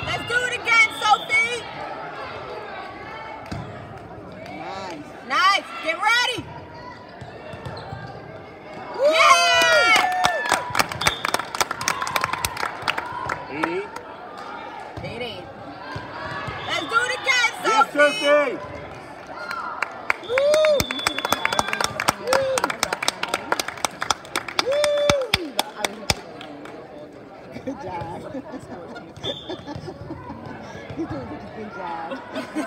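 Indoor volleyball play echoing in a large hall: shoe squeaks on the court, ball hits and bounces, and scattered voices of players and spectators. It is busiest in two stretches, in the middle and later on.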